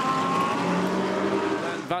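GT3 race car engines at speed as a pack of cars passes on the circuit, a steady pitched engine note that falls slightly in pitch.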